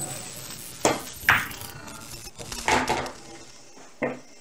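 Pool balls knocking on the table after a cut shot: a sharp click about a second in as the cue ball meets the object ball, then a further knock and a cluster of knocks a little later as balls strike the cushion and the object ball drops into the corner pocket.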